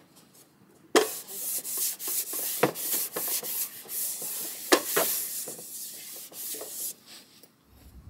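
A cloth rubbing back and forth across a wooden tabletop, wiping it down, with a few light knocks among the strokes. It starts about a second in and eases off near the end.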